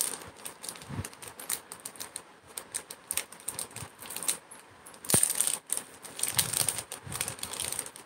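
Irregular light clicks and rustles of handling, with a louder clatter about five seconds in.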